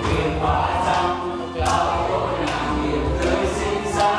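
Karaoke: men singing into handheld microphones over amplified backing music with a steady low beat, several voices singing together.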